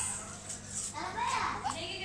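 A small child's voice: short, high-pitched vocal sounds, with no clear words.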